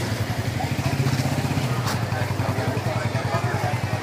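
An engine running steadily nearby with a rapid low throb, cutting off abruptly at the very end.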